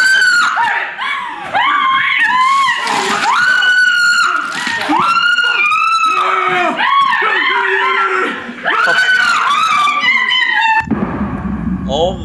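A woman screaming in panic again and again, high-pitched, with a man yelling. The screams cut off suddenly near the end.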